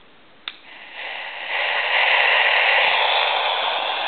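Portable AM radio switched on with a click about half a second in, then static hiss from its speaker, tuned between stations, growing louder over the next second as the volume comes up and then holding steady.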